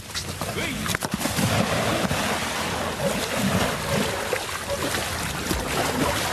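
A man falls into deep, muddy floodwater about a second in, then splashes and churns heavily as he flounders in it.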